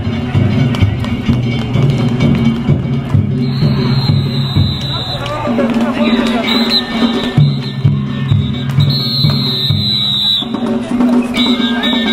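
Danjiri festival music, the narimono of drums, gongs and flute played on the float, mixed with the chanting of the rope pullers as the danjiri is hauled along at a run. A high held tone drops in and out through the din.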